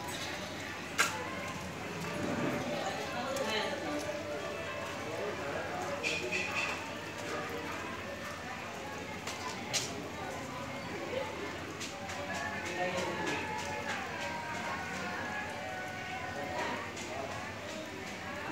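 Indistinct voices of people talking in the background, with a few sharp clicks or knocks, the loudest about a second in.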